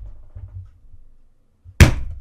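A man holding back laughter close to a microphone: faint low puffs of breath, then one sudden loud burst into the mic near the end.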